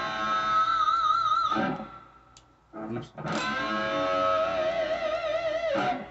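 Electric guitar playing solo lead lines: a sustained note shaken with wide vibrato that dies away after about a second and a half, then after a short gap a second long held note with vibrato that stops just before the end.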